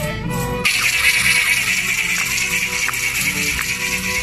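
Live Andean folk dance music played on violins and harp. Less than a second in, a steady, loud shaking of hand rattles joins it and carries on throughout.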